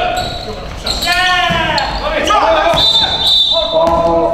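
Live basketball game in a gymnasium: a basketball bouncing on the hardwood floor amid players' shouts and calls, echoing in the hall. A short high squeak comes about three seconds in.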